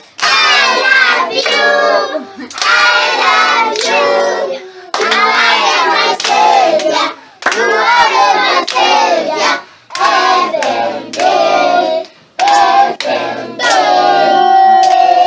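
A group of children singing a song about baby Jesus in short phrases, with hand clapping along.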